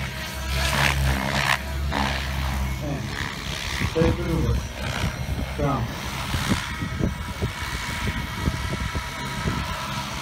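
Radio-controlled 3D helicopter flying over the field, its motor and rotors giving a faint steady whine, with people talking nearby.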